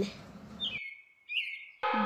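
Faint bird chirps: a few short high calls over light background hiss. The hiss drops out just under a second in, and two more brief chirps follow.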